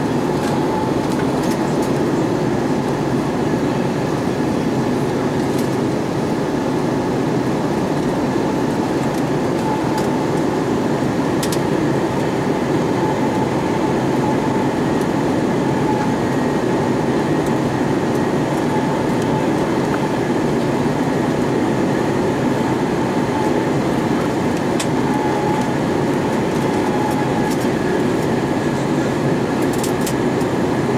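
Steady cabin noise inside an Airbus A320-232 on approach, heard from a window seat over the wing: an even rumble from its IAE V2500 engines and the airflow over the fuselage, with a faint steady whine above it.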